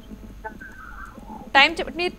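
A quiet stretch, then a woman's voice starting to speak about one and a half seconds in.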